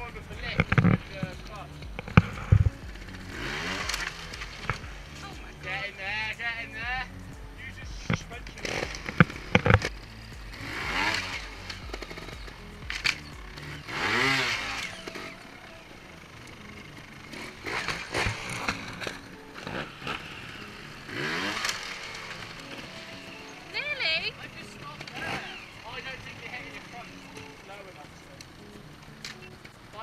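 Trials motorcycle engine blipped in short, sharp revs that rise and fall several times, with a few hard knocks as the tyres strike the concrete.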